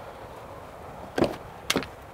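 Rear door of a Ford F-150 SuperCrew being unlatched and opened: two short clicks or knocks about half a second apart.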